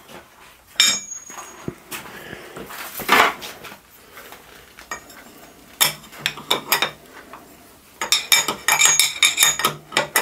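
Steel clinks and rattles from a milling-machine collet chuck as an end mill is seated in the collet and the collet nut is tightened with a spanner. There are a few single ringing clinks, then a quick run of them near the end.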